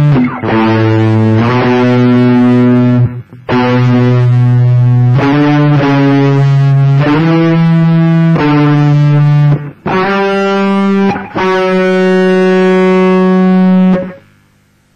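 Overdriven electric guitar, a Les Paul-style with humbucker pickups, playing a slow solo line of long sustained single notes, each held a second or two. It ends on a long held note that stops at the very end.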